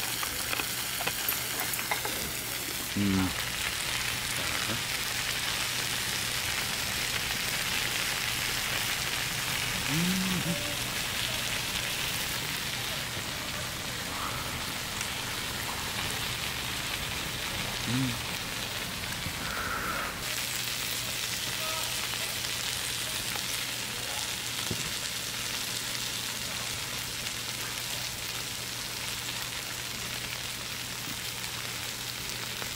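Pork belly and vegetables sizzling steadily on a large flat iron griddle. A person's short hum is heard three times, about 3, 10 and 18 seconds in.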